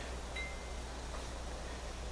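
A steady low hum, with one brief, faint high ringing tone about a third of a second in.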